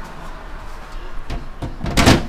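Desktop PC case side panel being fitted and pushed shut: a few light knocks, then a loud clack near the end as the panel seats in one go.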